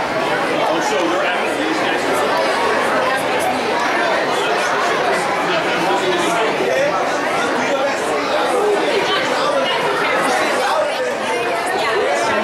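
Crowd chatter: many people talking at once, overlapping voices that run on at a steady level in a large indoor hall.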